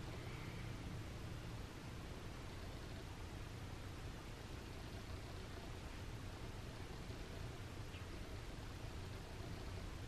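Faint steady hiss with a low hum underneath: room tone, with no distinct sound events.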